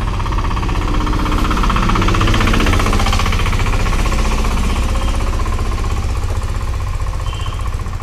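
A motor vehicle's engine running close by with a rapid knocking clatter. It swells to its loudest about two to three seconds in and then eases off a little, as a vehicle passing near does.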